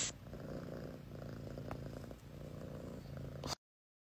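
A domestic cat purring faintly and steadily; the sound cuts off abruptly about three and a half seconds in.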